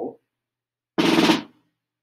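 Snare drum struck with sticks in a seven-stroke open (double-stroke) roll: seven quick hits played as two-for-one diddle motions. It starts about a second in and lasts about half a second.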